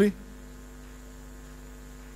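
Steady low electrical mains hum in the microphone and sound-system feed, with the tail of a spoken word cut off right at the start.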